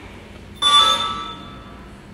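A single bright bell-like chime: it sounds suddenly about half a second in, with a few clear ringing tones that fade out over about a second.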